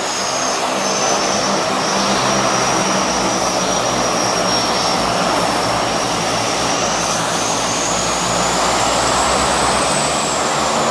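A DHC-6 Twin Otter floatplane's twin Pratt & Whitney PT6A turboprop engines running at low power as it taxis on the water: a steady propeller drone under a high turbine whine that dips and then rises in pitch toward the end.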